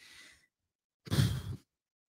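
A man sighs once, a short breath out into the microphone about a second in.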